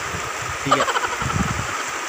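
Muddy floodwater of a swollen river rushing steadily past the bank, with a brief low rumble about a second and a half in.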